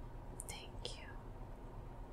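Two short whispered, hissy sounds, about half a second and a second in, over quiet room tone.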